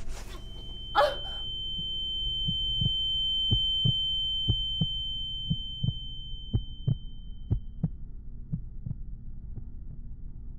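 Film sound design: a thin, steady high ringing tone that fades out about eight seconds in, over a low hum, with a series of dull thumps about two a second that start a couple of seconds in and space out toward the end. A short vocal sound comes about a second in.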